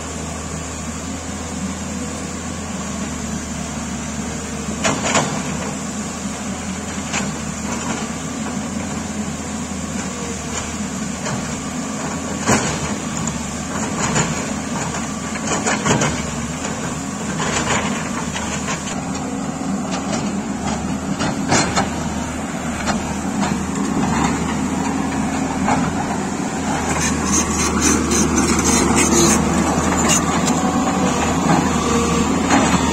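A Tata Hitachi EX210LC tracked excavator's diesel engine runs steadily under load as the machine digs through landslide rubble. Several sharp knocks of rock against the bucket and stone stand out over the engine, which grows louder near the end.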